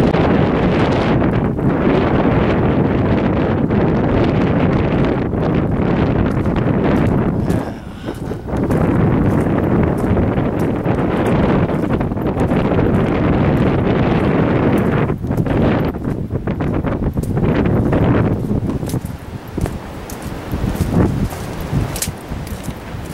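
Wind blowing across the camera microphone, loud and steady, with a brief lull about eight seconds in and more uneven gusts over the last few seconds.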